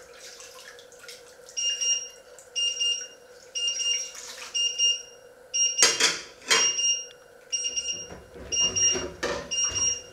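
An electronic alarm beeping steadily, about once a second, starting a second or so in. A few short noisy bursts, like kitchen clatter, come in the middle and near the end.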